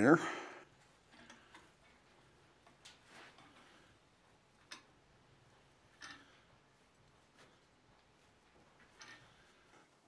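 Faint, scattered metal clicks and ticks from a screw-type anvil hold-down clamp being tightened by its T-handle onto a workpiece on the anvil, with long quiet gaps between them.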